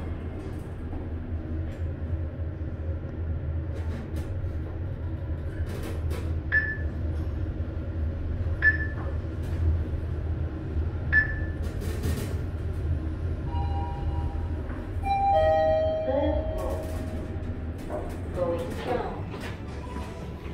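Mitsubishi traction elevator running, with a steady low hum from the moving car, three short electronic beeps about two seconds apart, then a brief cluster of tones and voices a little past the middle.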